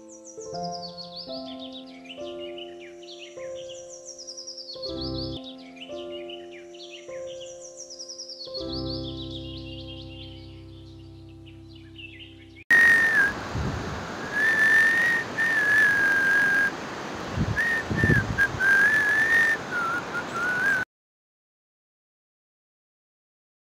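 Instrumental background music with a repeating high, falling melody. About 13 seconds in it cuts to a much louder steady rushing noise, over which a person whistles a wavering tune. This stops abruptly near the end.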